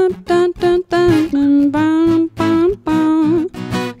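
A woman sings a wordless melody over acoustic guitar: a string of short notes mostly on one pitch, dropping lower in the middle. It is the melody of a song idea before it had lyrics.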